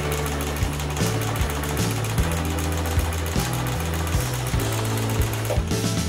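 Janome electric sewing machine running, stitching steadily, and stopping just before the end, over background music.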